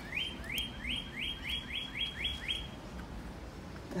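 A songbird singing a quick run of about nine upslurred whistled notes, roughly four a second. The run stops a little before three seconds in.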